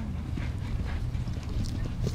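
Muffled hoofbeats of a horse cantering on a sand arena's footing, heard faintly over a steady low rumble.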